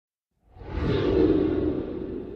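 A whoosh sound effect that swells in from silence about half a second in and then holds, easing slightly.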